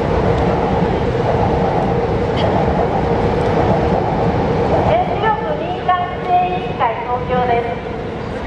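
Steady rumble of passing traffic with a constant hum. About five seconds in, high wavering tones rise over it as the rumble eases.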